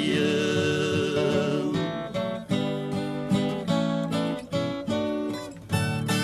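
Moda de viola hymn music: a sung note held with vibrato fades out in the first two seconds, then an instrumental passage of strummed and plucked acoustic guitar strings.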